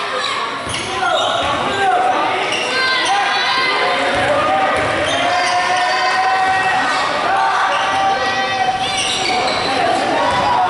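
A basketball being dribbled on a hardwood gym floor, with the bounces echoing in the hall, while players and spectators call out.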